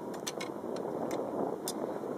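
Wind buffeting the microphone in a steady rush, with several short, sharp clicks as carbon feeder rod sections and tips are handled and fitted together.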